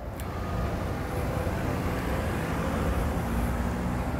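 Low outdoor rumble that rises within the first second and then holds steady, with a single click right at the start.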